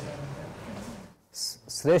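A man speaking Hindi: his voice trails off, there is a short pause just past a second in, and then he resumes with a hissing 'sh' sound.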